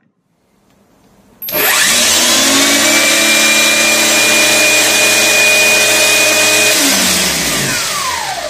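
Brushless motor of a cordless-grinder reference design, driven by an STSPIN32F0B controller board from an 18 V lithium battery, spinning a disc. About a second and a half in it starts abruptly and runs up to speed almost at once. It runs steadily with a high whine, then near the end it is switched off and winds down with falling pitch.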